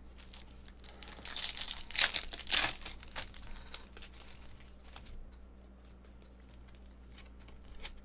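A Bowman's Best baseball-card pack's foil wrapper torn open, a few loud crinkling rips between about one and three seconds in, followed by quieter rustling and clicking as the cards are handled.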